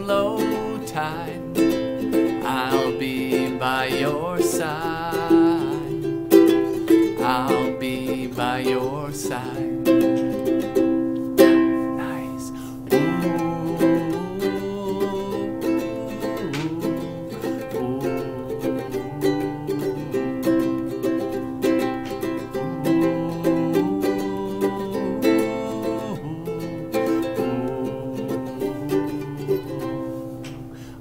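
Ukulele playing a steady strummed accompaniment. A man's voice sings along over the first few seconds, then the ukulele carries on alone.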